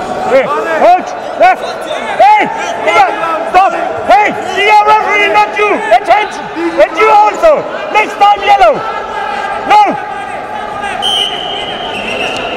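Coaches and teammates shouting from the sidelines: many short, loud calls overlapping one another. Near the end a referee's whistle sounds, a steady high tone lasting about a second, as the bout restarts.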